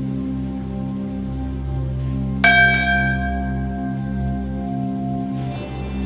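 A single bell struck once about two and a half seconds in, its ringing tone fading over about three seconds, over steady background music with a low drone.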